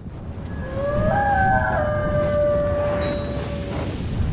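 Logo-animation sound effect: a swelling low rumble with tones that glide upward and then hold, one long tone fading out near the end, building toward a burst.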